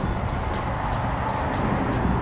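Music playing over a steady low rumble of vehicle noise.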